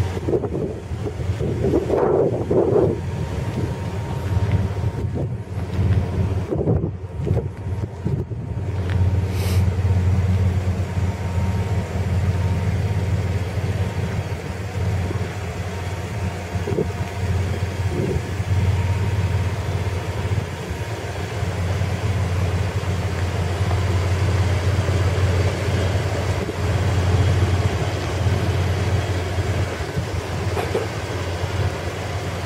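A 2001 Dodge Ram 1500's 3.9-litre V6 petrol engine idling with a steady low hum.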